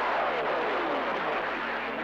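CB radio receiver hissing with band static, while a heterodyne whistle slides steadily down in pitch over the first second and a half.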